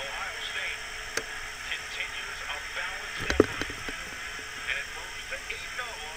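Faint, thin-sounding speech from the football broadcast playing in the background, with a sharp click about a second in and a low thump about three and a half seconds in.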